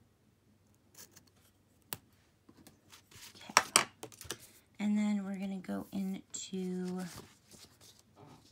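Craft-paper handling: a couple of soft clicks, then rustling and a sharp snap of sticker paper or tape as a Slice ceramic cutter trims at the page edge. In the second half a woman hums three short, steady held notes.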